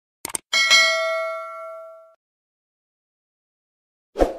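Subscribe-button animation sound effect: a quick double mouse click, then a notification-bell ding that rings with several pitches and fades out over about a second and a half.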